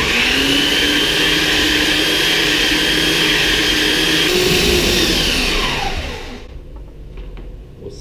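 Handheld electric belt sander running on a soft pine board, pressed in to dig into the grain. It is switched off about five and a half seconds in and winds down with a falling whine.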